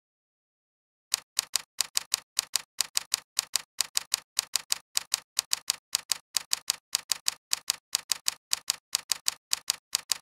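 Typing sound effect: a steady run of sharp key clicks, about three to four a second, starting about a second in.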